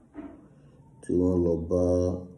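A man's voice intoning two long, held syllables in a sing-song, chant-like way, starting about a second in, after a short faint sound near the start.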